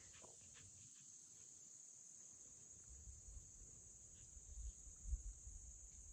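Faint, steady high-pitched chorus of crickets and other insects in the grass, with a soft low rumble coming and going in the second half.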